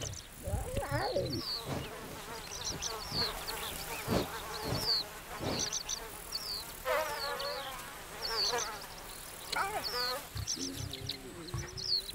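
Lion cubs pawing and nosing a hard-shelled boulder camera: a few knocks on the shell and two short wavering calls, over insects chirping in quick repeated high notes.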